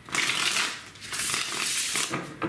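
A tarot deck being shuffled by hand: two spells of papery card noise, each nearly a second long.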